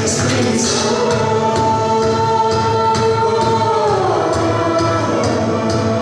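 An a cappella vocal group singing with a string ensemble of violins and cellos over a steady beat. A long held chord rings for about three seconds, then slides down in pitch about four seconds in.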